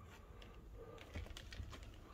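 Faint, irregular clicks and ticks from a scale RC crawler truck creeping slowly over patio tiles, over a low rumble.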